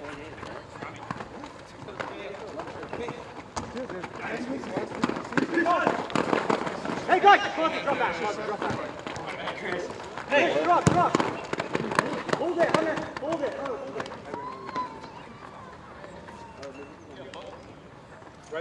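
Players shouting to each other during a soccer game on a hard court, with sharp knocks of the ball being kicked. One hard knock comes about eleven seconds in, and the shouting is loudest in the middle.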